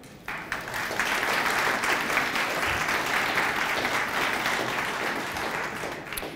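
Audience applauding, starting suddenly just after the opening and easing off near the end.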